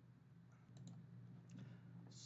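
Near silence: faint room tone with a low hum and a few soft clicks about a second in.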